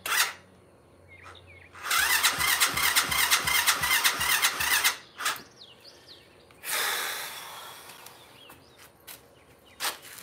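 ATV engine being cranked on its electric starter for about three seconds, with a steady pulsing turnover, and not catching. A sharp click comes just before, and a hissing noise rises and fades away a couple of seconds after the cranking stops.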